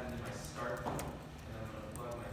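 Indistinct talking, with one sharp click about a second in.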